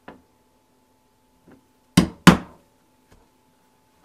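A mallet striking a two-prong stitching chisel to punch stitch holes through a thin leather patch: a light tap at the start, then two sharp strikes about a third of a second apart halfway through, with a faint tap after.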